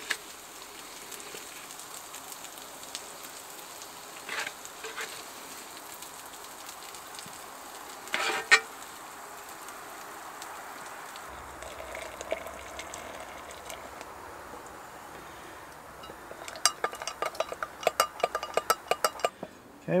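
Food sizzling steadily in a cast iron pan on a wood stove, with a metal spatula clinking against the pan and plates as it is served out: two single clinks, then a quick run of sharp clinks and scrapes near the end.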